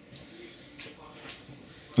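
Quiet room tone with a short, sharp rustle of handling noise a little under a second in and a fainter one soon after.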